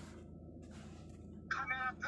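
Low steady hum of a car cabin, then about one and a half seconds in a sudden, much louder high-pitched sound with a clear pitch breaks in.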